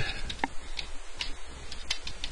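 Computer keyboard being typed on: a few separate, irregularly spaced key clicks.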